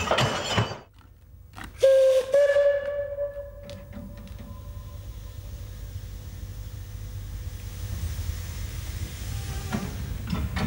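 A narrow-gauge 0-4-0 steam tank locomotive gives two whistle blasts: a short one, then a longer one that fades away with an echo. Steam hisses briefly just before them.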